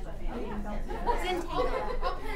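Crowd chatter: many people talking at once in overlapping conversations, with no single voice standing out.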